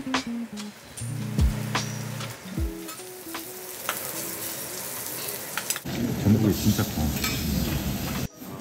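Background music with a beat, then, about six seconds in, abalone in their shells sizzling on a hot teppanyaki griddle with a dense, crackling hiss.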